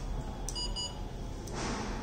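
A small switch clicks, immediately followed by a quick double high-pitched electronic beep from the smart blind stick's circuit, then another click about a second later.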